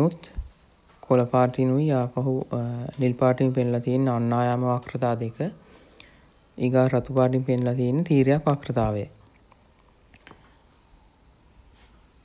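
A man lecturing in two stretches of speech, with a steady high-pitched background drone under it throughout.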